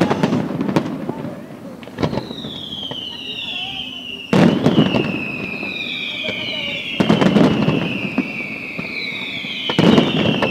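Aerial fireworks display: shell bursts about every two to three seconds, the loudest about four seconds in. From about two seconds on, several overlapping whistles glide slowly down in pitch over the bursts.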